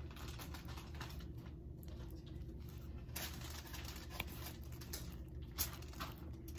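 Faint, scattered light taps and scrapes of a metal spoon spreading pizza sauce on dough and scooping it from a glass bowl, over a steady low hum.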